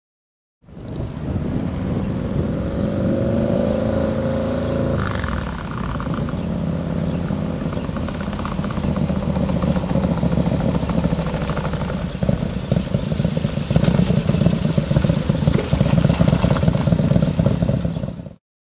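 Motorcycle engine running hard under acceleration: its pitch climbs over the first few seconds, changes abruptly about five seconds in, then holds at a steady high-speed drone that grows somewhat louder in the second half.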